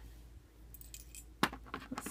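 Metal enamel Disney trading pins clinking against each other as a hand picks through a pile of them, with one sharper click about one and a half seconds in.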